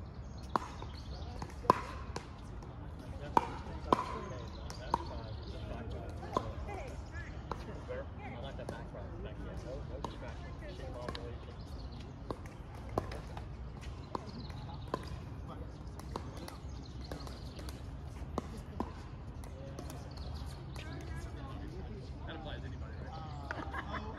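Pickleball paddles striking the ball on other courts: irregular sharp pops, the loudest in the first five seconds, over the murmur of players' voices.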